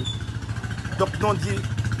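A steady low rumble with a fast, even pulse, like a small engine running, under one short spoken word about a second in.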